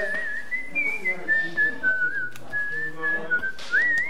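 A person whistling a tune: a clear single tone stepping between notes, with a wavering vibrato on the held notes and a quick upward slide near the end.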